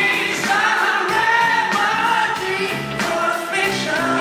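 Live band music with a male lead vocalist singing into a microphone over the band.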